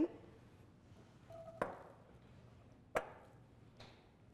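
Diced apples tipped from a mesh strainer into a stainless steel sauté pan, with two sharp clinks of utensil against pan about a second and a half apart and a fainter one near the end.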